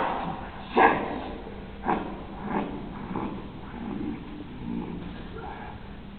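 A man's voice growling and grunting in a few short bursts, the strongest about a second in: an actor voicing the Beast's animal noises on stage.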